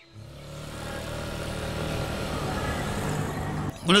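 Motor scooter engine drawing nearer, its steady running growing gradually louder as it approaches.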